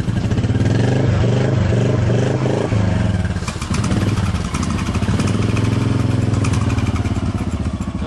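Motorcycle engine running steadily close by, an even rapid beat of firing pulses.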